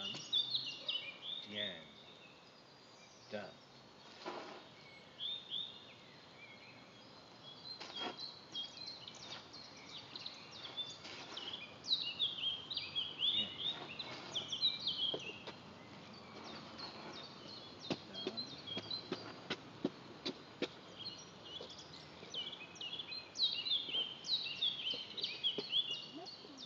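Songbirds singing and chirping in quick, repeated high notes, busiest about halfway through and again near the end, with a few brief knocks or rustles underneath.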